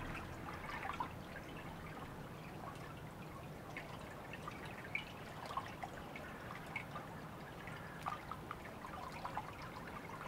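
Water trickling and dripping: a steady soft wash with small drips and splashes scattered irregularly through it.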